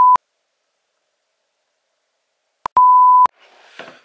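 Colour-bar test tone: a loud, steady single-pitched beep that cuts off just after the start, then dead silence, then a second identical beep about half a second long around three seconds in, each beep starting and stopping with a click.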